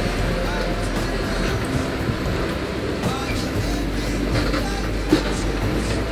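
Background music over a steady rushing noise of wind and sea on a sailing yacht under way.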